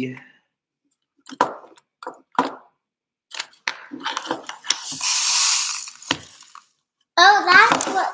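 Small plastic toy pieces being handled: a few light clicks, then about two seconds of dry rustling as the container of sparkles is worked. Speech returns near the end.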